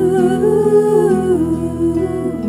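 Song intro: a woman humming a slow wordless melody that rises and then falls back, over held instrumental notes.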